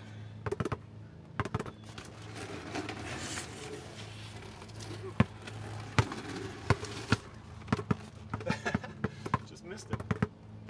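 A basketball bounced low and quickly on asphalt in irregular runs of sharp bounces, with a rushing noise between about two and five seconds in and a steady low hum underneath.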